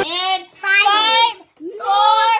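Children singing a short sing-song chant in three drawn-out notes with brief breaks between them.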